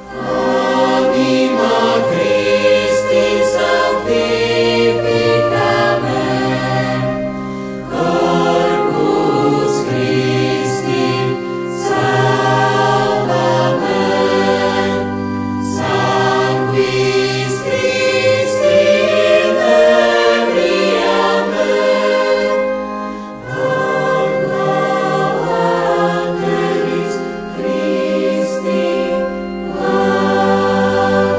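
Parish church choir singing a sacred song in harmony, in sustained phrases with short breaths between them about 8 and 23 seconds in.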